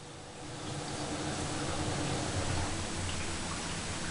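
A steady low hiss of room noise that swells slightly in the first second and then holds level, with no distinct brush strokes or clicks standing out.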